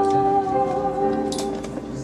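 A woman singing a show-tune ballad with piano accompaniment, holding a long note that gives way about a second and a half in, where a soft consonant is heard, and the music grows quieter.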